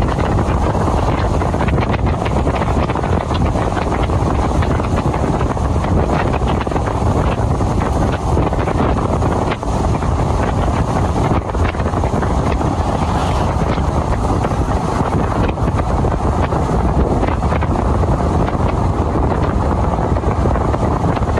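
Steady wind buffeting the microphone of a vehicle driving at speed, with low vehicle rumble underneath.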